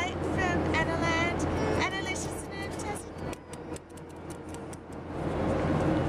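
Steady low hum of an airliner cabin in flight. For the first two seconds there are high, sliding vocal sounds over it. Then comes a run of clicks and rustles as the handheld camcorder is handled and lowered.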